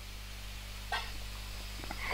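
Quiet room tone with a steady low electrical hum and one faint short sound about a second in.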